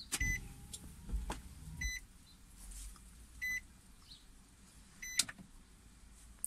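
Electronic warning beeps as the car's ignition is switched to ON: four short, high beeps about 1.7 seconds apart. A low hum runs under the first two or three seconds.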